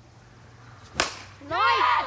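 A plastic wiffle ball bat hitting a wiffle ball with a single sharp crack. About half a second later comes excited shouting.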